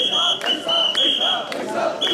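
Mikoshi bearers chanting in rhythm as they carry the shrine, with a whistle blown in three short blasts in time with the chant during the first second and a half.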